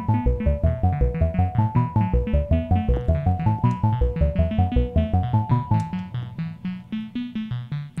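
Modular synthesizer voices sequenced by a Westlicht PerFormer, playing fast repeating note patterns at about six notes a second: a stepping upper melody over lower plucked notes. About six seconds in the upper melody drops out and the lower line carries on, quieter and less even, its timing pushed around by a recorded CV curve modulating the track's clock divider.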